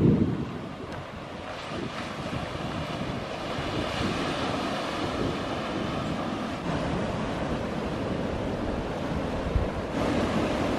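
Surf breaking in a rocky cove, a steady wash of waves, with wind buffeting the microphone in low rumbles at the start and briefly near the end.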